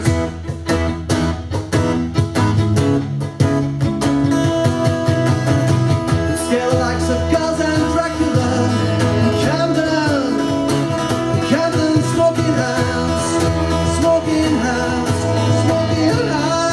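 Live acoustic folk band playing: strummed acoustic guitar, fiddle, bass and cajon, with sharp percussive strokes strongest in the first few seconds and a male lead voice singing over the band.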